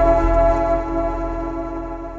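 Channel logo outro sting: a sustained synthetic chord ringing out and fading away, with a ticking underneath.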